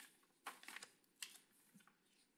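Faint scattered clicks and taps of laptop keyboards in a quiet room: a short cluster about half a second in and another single tap just after a second.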